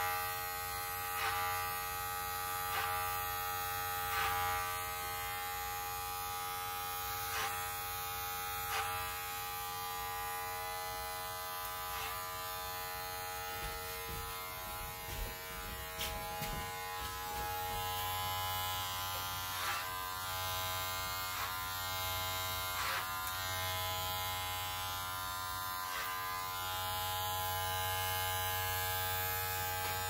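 Electric hair clipper running with a steady buzzing hum as it tapers short hair, with short clicks about every one and a half seconds during the first third.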